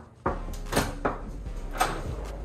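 A dorm room door's handle and latch clicking as the door is opened: a few sharp clicks and knocks spread over two seconds.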